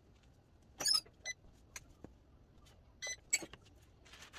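Parchment paper crinkling as it is laid over fabric and smoothed by hand: a handful of short, sharp crackles, the loudest about a second in and again about three seconds in.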